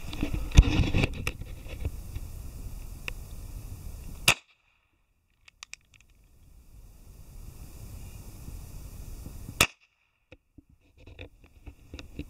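A sharp knock near the start, then two shots from a two-barrel Kimar derringer firing Flobert cartridges, about four and nine and a half seconds in. After each shot the sound cuts out briefly.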